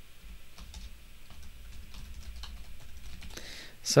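Computer keyboard typing: irregular, fairly faint keystroke clicks as code is entered, over a low steady hum.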